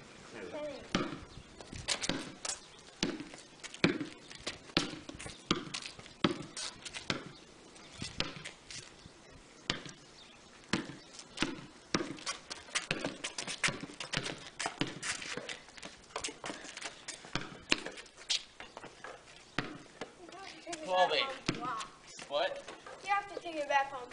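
Basketball bouncing on a concrete driveway, a long run of irregular dribbles and thuds, with a short burst of voices near the end.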